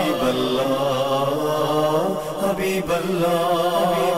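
A man's voice chanting in long, slowly gliding held notes, in the melodic sung recitation of an Urdu naat.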